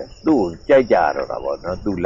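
A man speaking Burmese, preaching a Buddhist sermon, over a steady high-pitched chirring of crickets.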